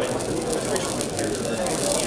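Fine sizzling and crackling as a lit match is held to a test tube of diesel fuel contaminated with water: the water spits and sputters in the flame, likened to an injector trying to burn water, and keeps the fuel from lighting.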